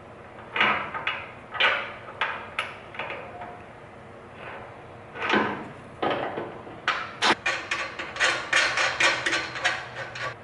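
Metal knocks and clinks as a suspension control arm and its mounting bolt are handled and fitted to the frame by hand. A few scattered knocks come first, then a quick run of clicks fills the last three seconds.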